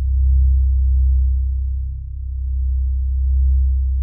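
Low, steady synthesizer drone of background music, slowly swelling and fading twice.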